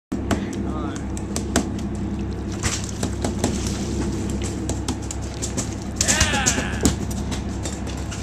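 Steady low hum of a fishing boat's engine, with frequent sharp knocks and clicks on deck and a raised voice about six seconds in.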